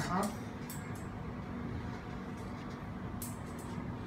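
Steady low room hum with a few faint, light clicks as aluminium frame bars and a tape measure are handled.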